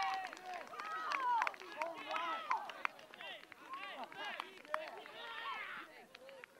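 Several people shouting and cheering excitedly at once after a goal, in overlapping short calls with a few sharp claps, loudest at the start and dying down.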